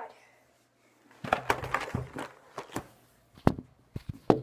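A cluster of close crackles and clicks starting about a second in, then a single sharp knock near the end.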